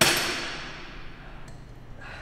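A single loud metal clang from the gym cable machine's weight stack as it is let down at the end of a set, ringing and fading out over about a second.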